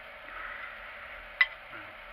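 A single sharp metallic click about one and a half seconds in, as a loose steel strip is laid against a steel clay pigeon trap arm, over a faint steady hiss.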